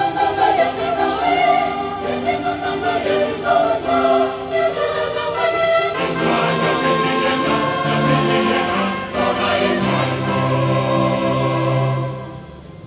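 Mixed choir singing sustained chords, accompanied by trombone, trumpets and keyboards. The harmony shifts to a new chord about halfway through, and choir and band cut off together at the end.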